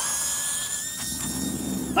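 Mini RC crawler's small electric motor and gearing whining under full throttle as it climbs a dirt slope, a high steady whine that creeps slightly up in pitch, with a low rumble of tyres and drivetrain joining about halfway through. The whine cuts off abruptly near the end as the throttle is released.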